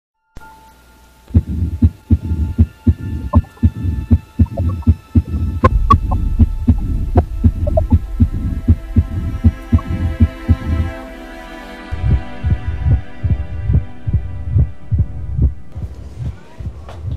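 A fast heartbeat sound effect: low thumps, about three a second, over a steady electronic hum with high held tones. The thumps drop out for about a second near the eleven-second mark, then resume.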